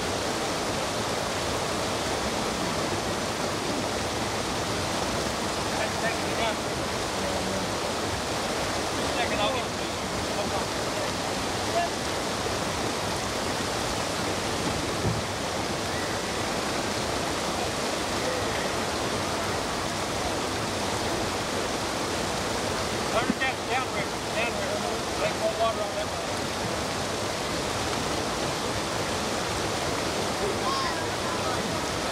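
Steady rush of river water pouring over a low rock ledge and through shallow rapids, with a few brief louder moments now and then.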